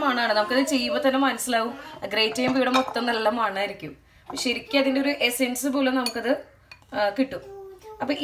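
A woman talking, with light clinks and taps of kitchen utensils against mixing bowls.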